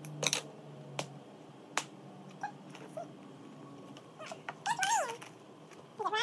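Scissors snipping through plastic wrapping, a few sharp separate cuts. Then, just over four seconds in, a child's high squealing with the pitch sliding up and down.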